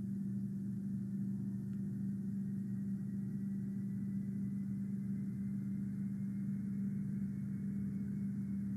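A steady low hum carrying one even tone, with no change in level.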